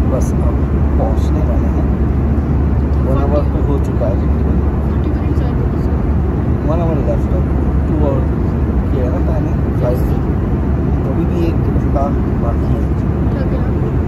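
Steady deep drone of a jet airliner's cabin in cruise, the engines and airflow running evenly, with voices talking under it.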